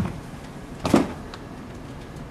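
A body landing on a hard hallway floor: one short thump about a second in.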